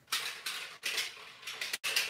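Clattering of a handheld plastic drink bottle being handled, in several short irregular bursts.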